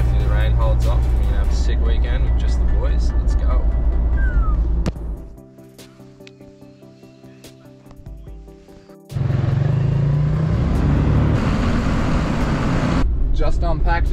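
Road and engine noise inside a 4x4's cabin while driving, a loud, steady low rumble under background music. About five seconds in it drops to a much quieter stretch of held musical notes. About nine seconds in a loud rushing noise returns.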